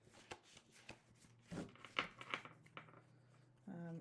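Tarot cards handled and flipped through by hand while searching the deck: a scatter of soft, irregular card clicks and rustles.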